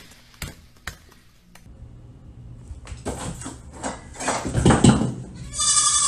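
An animal's cries: light taps in the first second and a half, then a harsh, rough cry that grows louder, ending in a short high-pitched call.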